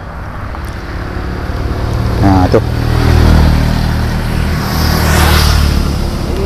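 A motor vehicle passing on the road close by: its low engine drone builds over the first few seconds and then holds.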